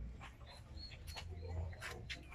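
Faint, short, high-pitched animal calls, a few in quick succession, over a low rumble and scattered clicks.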